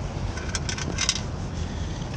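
A quick cluster of light metallic clinks about half a second to a second in, as of small metal pieces knocking against a stainless steel sand scoop, over a steady low rumble of wind and water on the microphone.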